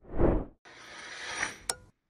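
Edited sound effects: a short whoosh, then a hiss that grows louder and ends with a sharp click near the end.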